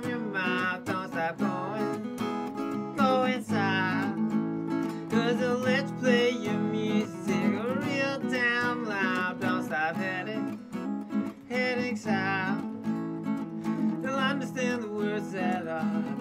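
A man singing long, drawn-out notes that waver in pitch over a strummed acoustic guitar.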